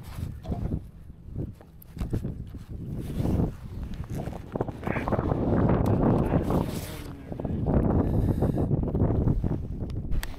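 Wind buffeting the microphone, a low uneven rumble that swells and fades, with a few light knocks.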